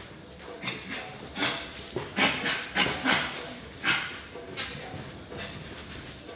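A boxer's sharp, hissing exhalations as he throws punches: about seven short bursts over three seconds at an uneven pace, tailing off after about four seconds.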